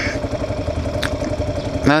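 2009 Kawasaki KLR650's single-cylinder engine idling steadily at a stop, with a light click about a second in.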